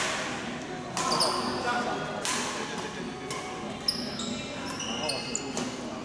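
Badminton rackets striking a shuttlecock in a doubles rally, a sharp crack roughly once a second, with short high squeaks of sneakers on the court floor between the hits.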